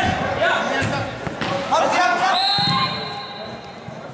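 A football kicked and banging against the boards of an indoor five-a-side pitch, with a few sharp impacts near the start and again about a second and a half in, among players' shouts.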